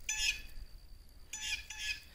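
A bird calling twice: a short call at the start and a longer one a little past the middle, both high-pitched and faint.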